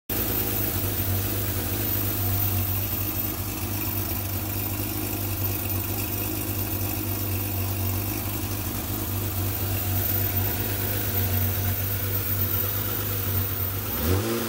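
Porsche 911's air-cooled 3.6-litre flat-six idling steadily, heard up close at the open engine bay.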